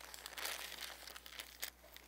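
Thin Bible pages rustling and crinkling as they are turned by hand, loudest about half a second in, followed by a few short crinkles and ticks as the pages settle.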